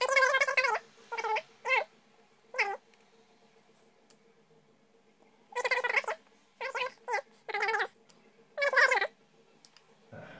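A cat meowing repeatedly: short, wavering calls, a cluster in the first few seconds, then a pause, then another cluster later on.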